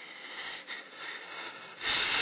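A man breathing audibly between spoken lines: a soft, airy rush of breath that swells and fades a few times.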